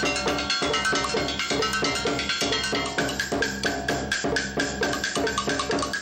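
A drummer playing a fast, steady stick rhythm on a multi-percussion setup of drums, metal percussion and a pedal kick drum, with ringing pitched metal notes among the strikes.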